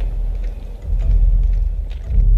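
Deep, low rumble of a tense film score, swelling about half a second in.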